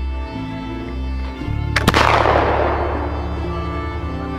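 A black-powder flintlock rifle fires once about two seconds in: a sharp crack, then a report whose echo dies away over about a second, over background music.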